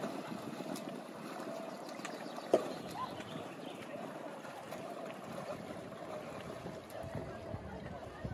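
Sea water splashing and sloshing around a swimmer doing front crawl in calm water, with a sharp knock about two and a half seconds in.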